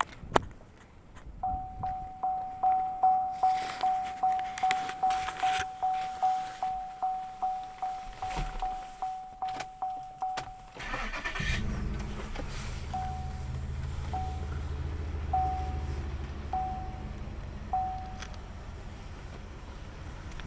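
A 2008 Chevrolet Impala SS's warning chime pulses rapidly for several seconds; then the starter cranks briefly and the 5.3-litre V8 catches and settles into a steady idle, while a chime sounds five more times, more slowly.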